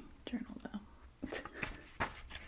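A softly spoken word, then a few light clicks and a faint rustle from a hardcover journal being handled.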